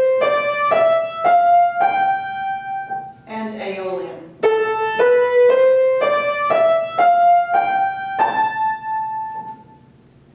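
Upright piano played one note at a time on the white keys: an ascending G-to-G (Mixolydian) scale ends on a held top G about two seconds in, followed by a short spoken word. Then an ascending A-to-A (Aeolian) scale climbs eight notes, about two a second, to a held top A that fades out near the end.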